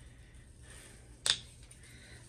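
A single short, sharp click about a second and a quarter in, over quiet room tone with a faint steady hum.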